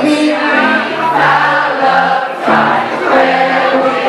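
Live music: a man singing into a microphone with electric guitar accompaniment.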